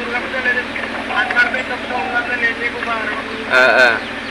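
Speech: a man's voice in conversation on a mobile phone held on speaker. A short, louder burst near the end stands out above the talk.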